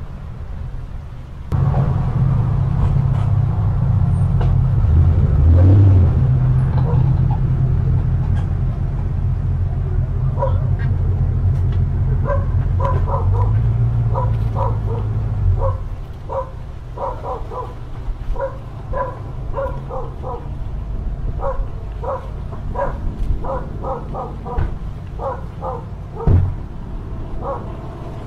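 A pickup truck engine running loudly as the truck and its trailer pull past close by; the engine cuts off suddenly a little over halfway through. A dog barks repeatedly, a few short barks a second, through the second half.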